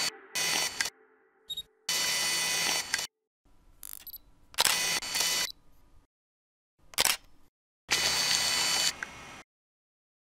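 Single-lens reflex camera shutter and mechanism sound effects: a series of separate clicks and whirring bursts, from a brief snap to about a second long, with short silences between them, stopping about nine and a half seconds in.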